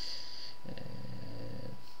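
A man's drawn-out hesitation sound, an unbroken low hum held for about a second after a brief breathy hiss.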